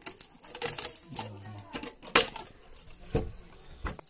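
Keys and an iron padlock rattling and clicking on a door hasp as the lock is worked open, with a sharp metallic click about two seconds in. Low knocks follow near the end as the old wooden door is opened.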